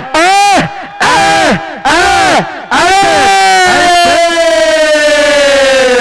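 A man's voice shouting commentary: a few short shouted calls, then one long drawn-out call from about three seconds in, held and slowly falling in pitch.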